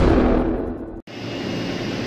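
The tail of a cinematic intro sting, a deep boom-like rumble, fading out over the first second, then cut off abruptly. After the cut a steady, even background hum runs on.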